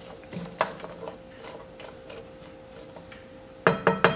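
Wooden spoon stirring chopped peppers and onions in a nonstick frying pan: irregular scraping taps over a faint steady hum, with a louder clatter near the end.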